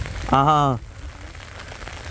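Steady rain falling, with one short drawn-out syllable from a person's voice about half a second in.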